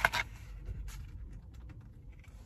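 Faint rustling and light clicks of cardboard and plastic test-kit packaging being handled.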